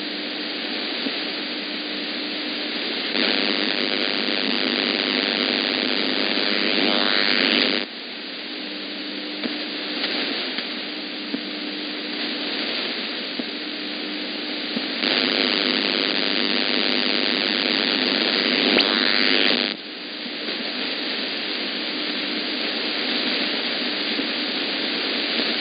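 Shortwave receiver hiss and static in upper sideband on 11560 kHz, with a faint low tone that comes and goes. The hiss swells louder twice, a few seconds in and again past the middle, and each time drops back suddenly. The number station's carrier is on air, but no voice is heard.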